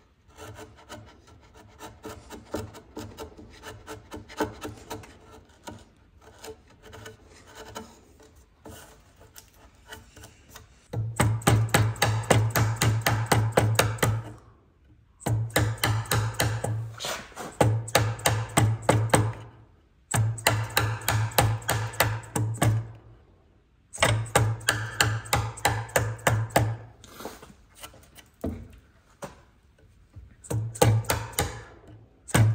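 Steel bench chisel paring hardwood, a quiet scraping for the first third. Then come louder runs of quick, even strokes, a few seconds each, with a low hum under them, stopping and starting abruptly.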